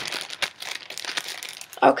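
Plastic packaging crinkling as it is handled, a quick irregular run of crackles.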